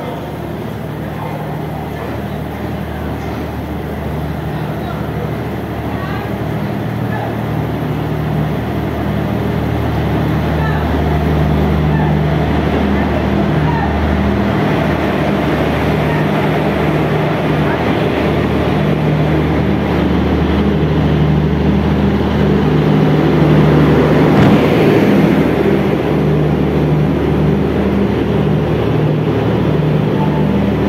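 Indian Railways electric locomotive hauling the Garib Rath Express slowly along the platform, with a steady low hum that grows gradually louder as it draws level and is loudest about three-quarters of the way through, as the coaches roll by.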